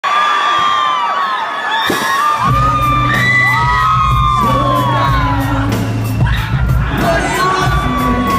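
An arena crowd screaming and cheering in high, long shrieks. About two and a half seconds in, the live band comes in with a steady bass line and an even drum beat, and the screams carry on over the music.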